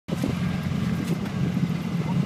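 Engine of a side-by-side utility vehicle running steadily while driving, heard from on board, with a few knocks and wind on the microphone.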